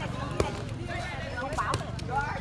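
A single sharp smack of the light air volleyball about half a second in, over the voices of players and onlookers.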